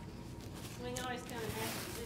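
Faint crinkling and tearing of plastic film as a pack of chicken tenders is opened, with a faint voice in the room about a second in.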